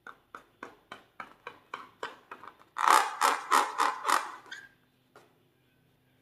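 Fingers tapping and rubbing on a latex balloon: a run of light taps about three a second, then a louder, quicker run of strokes for about two seconds, and one last tap near the end.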